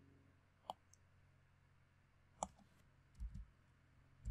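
A few faint, sharp clicks of a computer mouse and keyboard on a quiet desk, two clicks spaced well apart, followed by a couple of soft low thumps about three seconds in.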